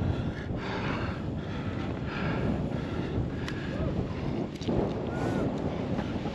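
Steady rush of wind over the microphone of a parachutist descending under a round canopy.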